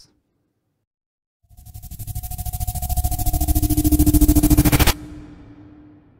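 UVI Meteor software instrument playing its 'Approaching Drone' preset from the stutters and pulses category: a rapidly pulsing synthetic riser starts about a second and a half in and swells in loudness for about three seconds. It then cuts off suddenly, leaving a low hum that fades out.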